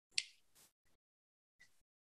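A single short, sharp click about a fifth of a second in, then near silence.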